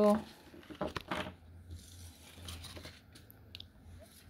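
Tarot cards being gathered up from a hard tabletop: soft sliding and rustling of the cards, with a couple of sharp taps about a second in.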